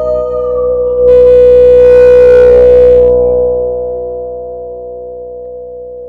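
La Diantenne 2.0, a self-built electronic instrument, sounding layered held tones. About a second in they swell loud and bright, then fade back down over the next few seconds.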